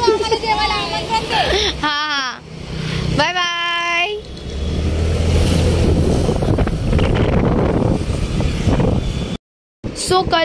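Voices and a held, wavering call fill the first few seconds. From about four seconds in, the steady low rumble of a car driving, engine and road noise heard from inside the cabin, cuts off suddenly near the end.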